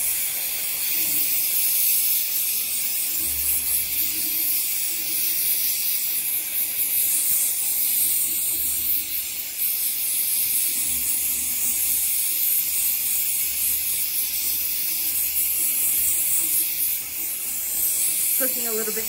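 Smith oxy-LPG jeweller's torch with a size 7 tip, its flame hissing steadily at high regulator pressure as it melts scrap silver in a crucible.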